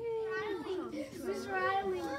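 Several children's high-pitched voices overlapping in a classroom, wavering up and down as they talk over one another.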